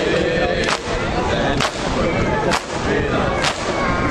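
A crowd of men performing matam, striking their bare chests with their open hands in unison. There are four loud, sharp slaps, evenly spaced a little under a second apart, over men's voices chanting a mourning lament.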